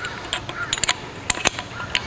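Hand-handling sounds of a packing gland being pushed down over the shaft onto the packing in a Berkeley jet drive pump: soft rubbing with a few sharp clicks around the middle.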